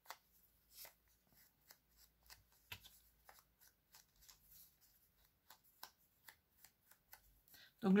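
Faint, irregular soft taps and paper rustles of a foam ink dabber being pressed along the edge of a small piece of book-page paper, about two or three a second, with one sharper tap near the middle.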